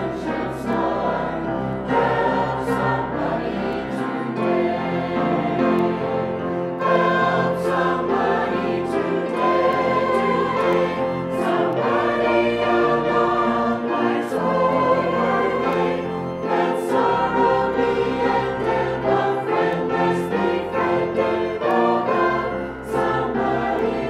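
A mixed church choir of men's and women's voices singing a hymn over an instrumental accompaniment, its low bass line moving to a new note every two seconds or so.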